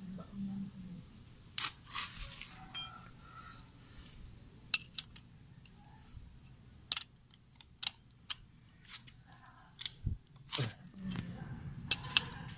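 Scattered sharp metallic clicks and clinks, a few with a short high ring, as a motorcycle's oil drain bolt is screwed back into the engine sump and tightened by hand and tool.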